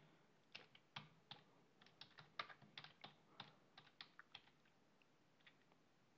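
Faint keystrokes on a computer keyboard: about fifteen separate key clicks in an uneven typing rhythm, stopping about four and a half seconds in.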